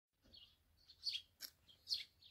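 A few faint, short bird chirps, spaced unevenly, some dropping in pitch.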